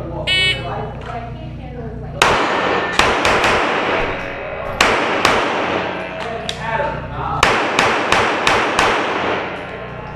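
Shot timer's high beep, about half a second long, starting the run, then a Glock 34 9mm pistol firing a string of rapid shots in irregular groups, with a pause of about a second after the first four shots. The shots echo off the concrete walls of the indoor range.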